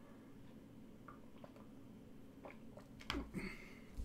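Quiet room tone with a faint steady low hum, and two short clicks near the end from a computer mouse being clicked.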